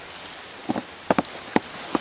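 A steady outdoor hiss with about five short, sharp clicks or taps in the second half, two of them close together a little past the middle.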